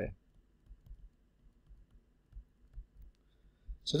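Faint, scattered light clicks and taps of a stylus on a tablet while handwriting, a few irregular ticks over a few seconds.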